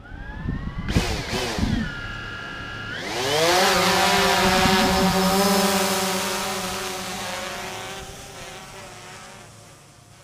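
A motor's whine rising in pitch and holding steady, then about three seconds in a louder rush whose pitch climbs and levels off before slowly fading away.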